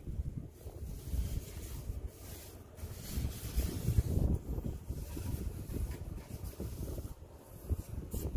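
Wind buffeting the phone's microphone: an uneven low rumble that swells and fades, strongest about four seconds in.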